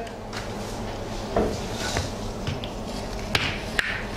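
Plastic egg trays being handled and set down on a table: a few light knocks and clatters, the sharpest two near the end, over a steady low hum.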